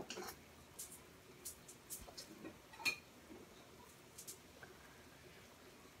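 Faint clinks and knocks of kitchen utensils and dishes, a handful of light taps spread over a few seconds.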